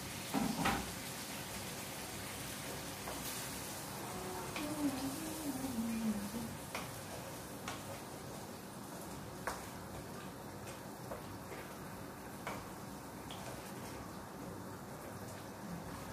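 Curry sauce sizzling and simmering in a nonstick pan on a gas burner while a wooden spatula stirs it, with scattered light taps of the spatula against the pan and a louder knock near the start.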